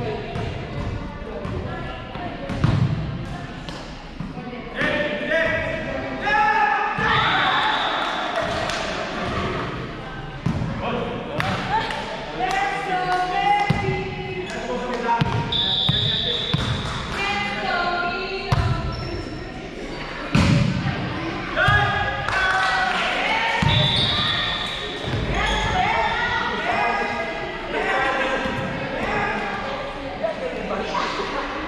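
Indoor volleyball being played: sharp hits of the ball and thuds on the hardwood court, with players' voices and calls echoing around the gym throughout.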